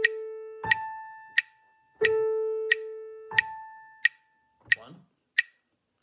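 Metronome clicking steadily at about 90 beats a minute, with a pitch-reference tone sounding A and then the A an octave above in half notes, two clicks each, for the flutes' octave-slur warm-up. The tone stops about four seconds in and the clicks carry on alone.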